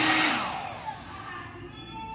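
Havells 1200 W hair dryer blowing on its hot setting, then switched off: the rush of air and the motor hum die away over about a second as the fan winds down.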